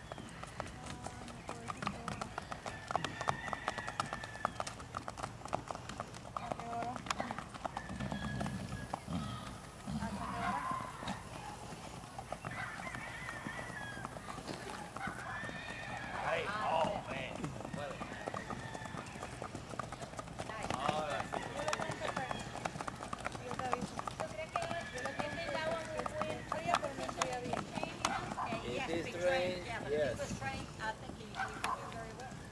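Paso Fino horses' hooves clip-clopping in quick, even beats on a sandy track, with people's voices over them at times.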